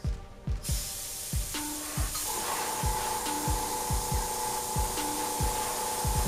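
An airbrush hissing steadily as it sprays a light coat of primer, starting about half a second in, over background music with a steady beat.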